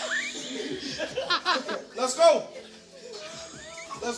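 Excited voices laughing and calling out without clear words, with a sing-song, music-like quality.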